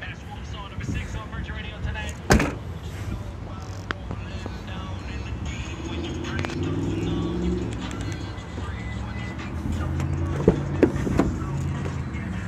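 SUV liftgate shut with one sharp thump about two seconds in. Near the end, a few clicks as the rear passenger door latch is opened.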